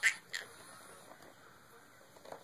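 Baby's breathy laughter: two short, high gasping bursts about a third of a second apart near the start.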